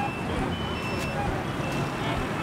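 Busy street traffic noise, a steady hum of engines and road noise, with a few short high-pitched beeps over it.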